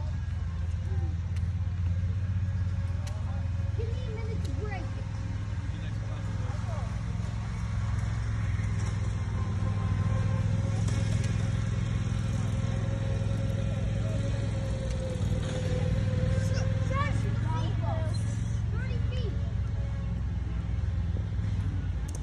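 Faint voices of people talking at a distance over a steady low rumble, with a thin steady hum in the middle.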